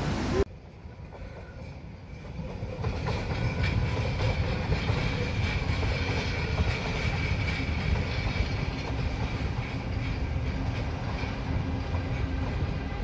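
A passenger train running on rails. Its rumble builds over the first few seconds after a sudden cut, then holds steady, with a faint steady whine above it.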